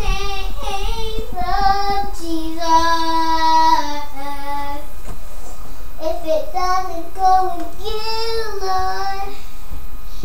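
A young child singing a praise song alone, unaccompanied, holding one long steady note a few seconds in.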